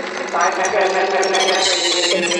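Tech house DJ mix in a breakdown: held synth tones and a voice-like sample, with the kick drum and bass dropped out.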